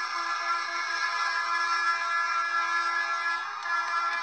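Music: a chord of several steady notes held throughout, with a faint wavering melody line above it.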